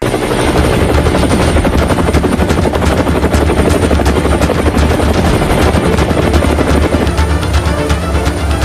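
Helicopter flying, its rotor blades chopping rapidly over a steady low engine drone; it starts abruptly and stays loud throughout. Near the end a faint rising tone comes in over it.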